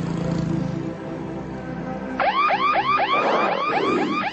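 A low, steady music drone, then about two seconds in a spotted hyena starts giggling: a quick run of rising-and-falling whooping notes, about four a second.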